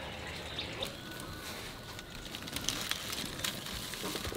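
Outdoor rural ambience with faint birds, and scattered light clicks and crackles that grow more frequent in the second half.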